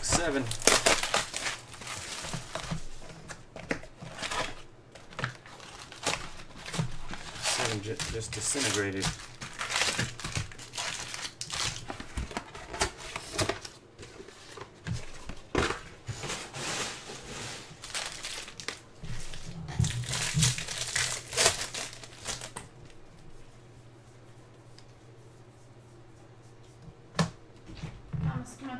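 Plastic shrink wrap being torn and crumpled off a baseball card box, and foil card packs crinkling as they are handled. The crackling comes in irregular spurts for about twenty-two seconds, then goes quiet apart from a few brief rustles near the end.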